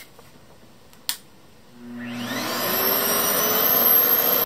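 RevAir reverse-air hair dryer's suction motor starting up: from about two seconds in, a rising whine and a growing rush of air that gets steadily louder as it spins up. A single sharp click comes about a second in.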